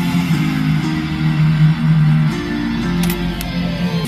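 Guitar music playing through a car stereo: a Pioneer head unit driving a pair of newly fitted 6-inch kick-panel speakers, the first test of the install. Held low notes carry the music, with little deep bass.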